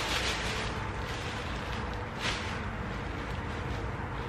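A black plastic garbage bag and the clothing inside it rustling as a garment is pulled out, in two bursts: one at the start and another about two seconds in. A steady low rumble runs underneath.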